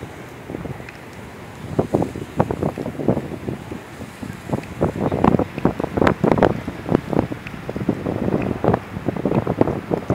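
Gusty wind buffeting the microphone: a low rush that breaks into irregular, uneven blasts from about two seconds in.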